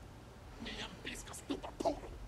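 Faint, low speech, quiet enough to sound whispered, starting about half a second in, over a steady low hum.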